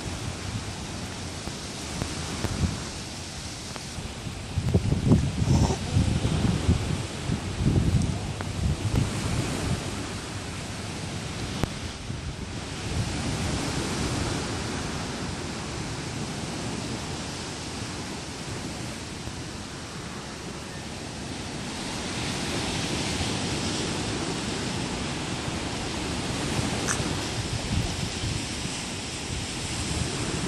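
Wind rumbling on the microphone over a steady outdoor noise haze, with the strongest, uneven gusts about five to nine seconds in.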